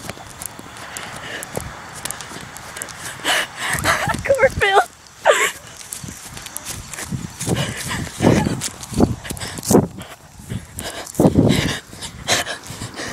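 Children running through a cornfield: irregular footfalls and rustling with panting, unworded shouts and laughter, and a wavering high cry about four seconds in.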